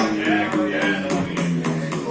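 Double-neck acoustic guitar strummed in a steady rhythm, its chords ringing.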